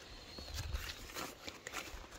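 Faint rustling and scattered light clicks of a phone being handled as it moves among strawberry plants, with a brief low rumble about half a second in.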